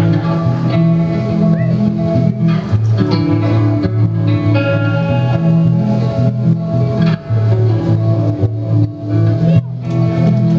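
Amplified electric guitar strumming ringing chords that change every second or two, the instrumental intro of the song before the vocals come in.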